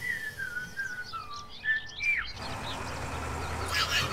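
A carefree whistled tune, a single wavering melody that steps downward and ends with a short upward flick about two seconds in, with light bird chirps above it. Near the end a different, noisier sound builds up.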